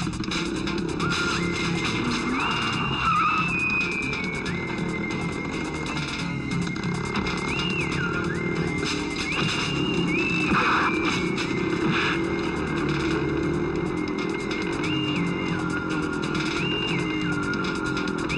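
Action-film soundtrack: background music with a high melody stepping between a few held notes, mixed over motorcycle engine and skidding sound effects.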